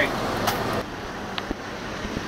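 Steady road noise of a moving jitney minibus heard from inside, with a sharp click about half a second in. It breaks off abruptly a little under a second in to a quieter background with two faint clicks.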